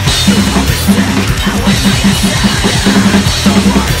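Acoustic drum kit played fast and hard, with kick drum, snare and cymbals, over a metalcore backing track with a pulsing, chugging low riff.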